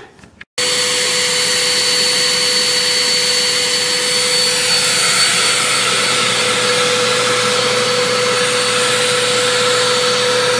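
Homemade blower made from a vacuum cleaner motor and fan, running loud and steady at full power with no diode to cut its voltage: a high whine over a rush of air. It starts abruptly about half a second in.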